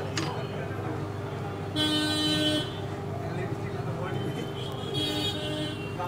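A vehicle horn honking twice: a longer, louder honk about two seconds in and a shorter, fainter one near the end, over a steady hum.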